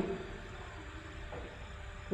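A pause in speech: quiet room tone with a faint steady hiss and low hum.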